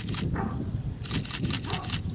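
A horse cantering on a sand arena: dull, muffled hoofbeats with clusters of short hissing bursts over them.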